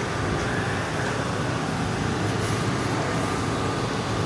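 Steady outdoor background rumble and hiss, with no single clear event.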